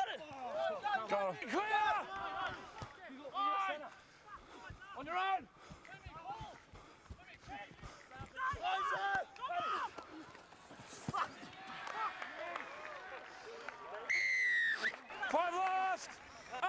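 Distant rugby league players shouting calls across the field, unintelligible. Near the end a referee's whistle blows once, a single shrill note of under a second.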